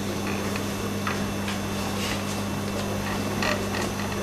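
Room tone in a pause between sentences: a steady low electrical hum with even hiss, and a brief faint sound about three and a half seconds in.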